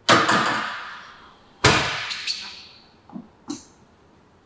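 Two loud metallic clanks of weight plates on a leg press machine, about a second and a half apart, each ringing out for about a second. A couple of lighter clicks follow near the end.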